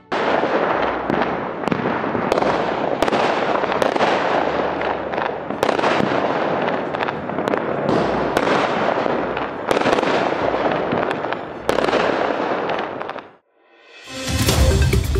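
Fireworks going off: a dense, continuous crackle with sharp bangs repeating over and over. The sound cuts off suddenly near the end.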